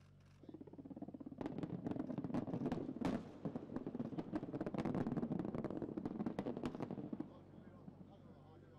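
A rapid string of sharp blast reports from more than 330 buried explosive charges fired one after another along an earthen dyke. It starts about half a second in, thickens into a dense crackle for several seconds, and cuts off suddenly about seven seconds in.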